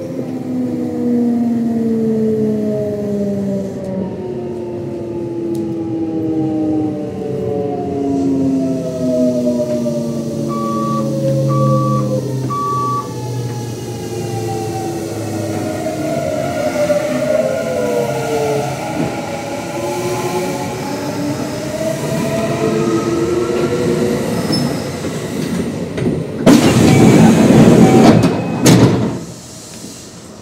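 Kintetsu 1026 series train's Hitachi GTO-VVVF inverter and traction motors under braking: several tones falling steadily in pitch, then crossing and shifting as the train slows for a station stop. Near the end a loud burst of rushing noise lasts about two seconds.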